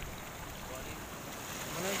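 Rough waves and rushing floodwater washing through a breached earthen embankment, an even noisy wash, with wind rumbling on the microphone. A voice starts near the end.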